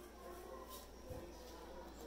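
Quiet room tone with a faint steady low hum and no distinct sound event.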